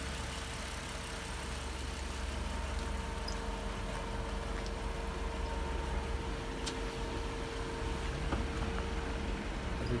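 2011 Jeep Wrangler's 3.8-litre V6 idling steadily.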